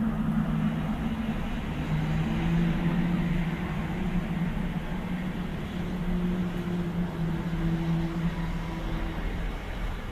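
A low, steady droning hum of a few held tones that step to a new pitch every second or two, over a constant background rumble: the kind of unexplained 'sky trumpet' sound.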